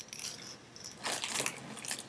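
A baby's toy rattle jingling briefly as it is set down, followed by rustling and handling noises.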